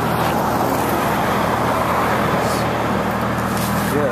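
Road traffic noise: a steady rush of tyres and engines from vehicles on the road beside the bridge.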